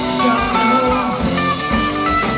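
Rock band playing an instrumental passage led by a guitar, with notes that bend in pitch over a steady band backing.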